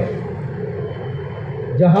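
A brief pause in a man's speech, filled with steady background hiss and a faint thin high tone. His voice comes back near the end.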